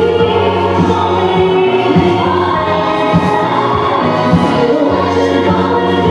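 Dance music with singing voices and long held notes, playing steadily for a ballroom rhythm-dance solo.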